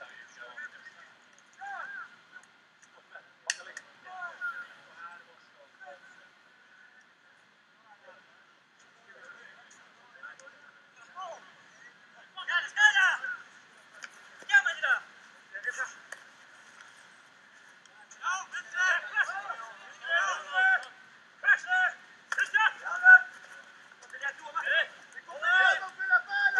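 Indistinct shouted calls from men, heard from a distance and sounding thin and tinny. They are sparse at first, then come more often and louder from about halfway through.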